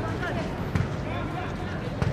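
Indistinct shouts and calls from football players and onlookers, with a thud of a football being kicked about three-quarters of a second in.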